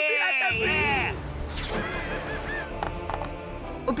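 Cartoon children's voices chanting and cheering for about a second, then a low rumble under soft background music.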